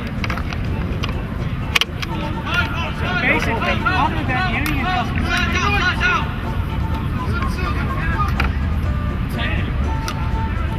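Indistinct voices talking in the background over a steady low rumble, with one sharp click a little under two seconds in.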